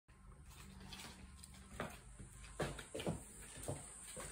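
Faint shuffling and a few soft knocks as a person sits down on a piano stool, over a low steady hum.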